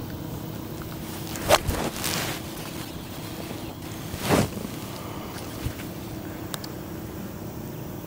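A seven iron striking a golf ball on a full approach swing: one sharp click about a second and a half in, then a softer short sound a few seconds later over faint open-air background noise.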